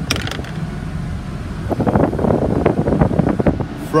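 Cabin sound of a Ford F-550 bus's 6.7-litre Power Stroke V8 diesel idling with the air conditioning blowing, a steady low hum. About two seconds in, a crackling rush of air buffets the microphone for about a second and a half.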